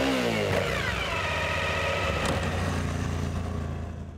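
Motorcycle engine sound effect revving up and dropping back, then running at a steady note that fades out near the end.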